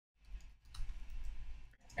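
Faint clicking of computer keyboard keys as a short word of code is typed.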